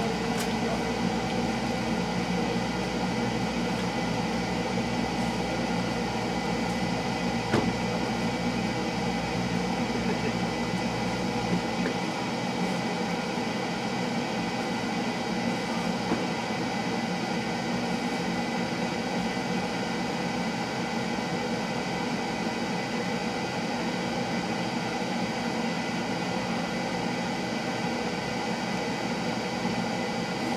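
A steady mechanical hum with several fixed tones, like a motor or appliance running without change, with a faint click about seven and a half seconds in.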